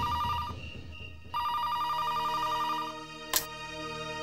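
Landline telephone ringing with a warbling electronic tone: two rings with a short pause between, then a single click near the end.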